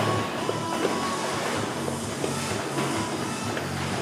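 Background music with steady low notes, over the repeated slapping of heavy battle ropes against the floor.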